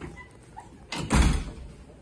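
A door shutting with a heavy thud about a second in, a short click just before it.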